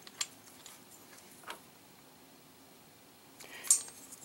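Faint handling sounds from a small aluminum engine cylinder head (a Predator 212cc's) being turned over in the hands: a couple of light clicks, then a short rustle and clatter near the end, over quiet room tone.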